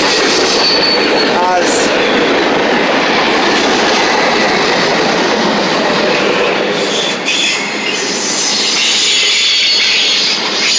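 Freight cars of a Norfolk Southern mixed freight train rolling past close by: a loud, steady rumble of steel wheels on rail, with brief high-pitched wheel squeals.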